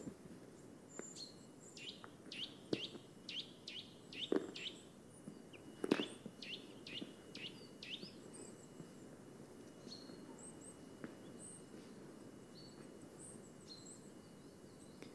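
Faint birdsong: a run of quick repeated chirps, about two a second, for the first several seconds, then scattered high chirps. A few sharp knocks come through, the loudest about three and six seconds in.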